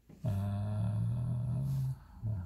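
A long, drawn-out hesitation sound, 'uhhh', held at a steady low pitch for nearly two seconds.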